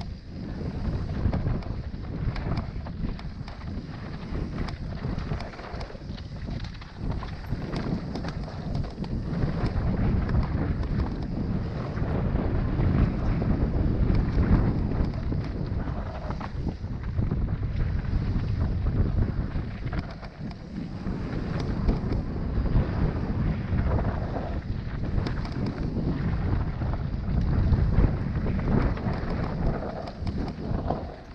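Wind buffeting the microphone of a camera on a mountain bike riding fast down a dry dirt trail, mixed with the rumble and rattle of the tyres and bike over rough ground, rising and falling with speed.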